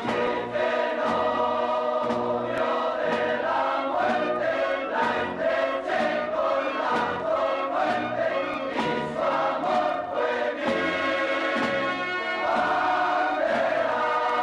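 Choir singing a march-like song over a steady drumbeat, as background music.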